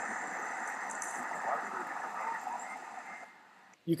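Location audio of a video clip playing back: steady outdoor background noise with someone talking faintly over it. It cuts off abruptly at a hard edit a little over three seconds in.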